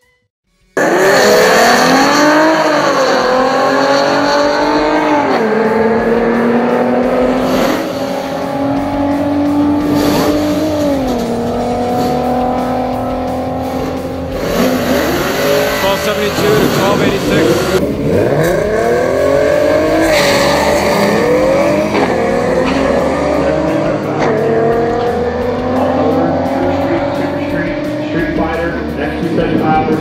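Ford Mustang 3.7-litre V6 at full throttle on a quarter-mile drag run, starting abruptly about a second in. Its pitch climbs through each gear and drops sharply at each upshift, several times.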